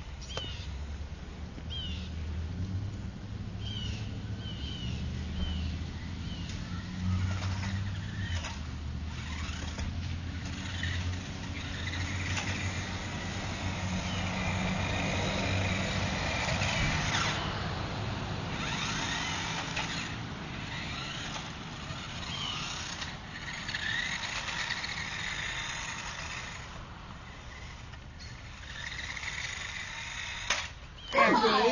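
A vehicle engine running steadily outdoors, with short bird chirps now and then over it.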